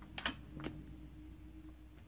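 Three light clicks within the first second, over a faint steady hum.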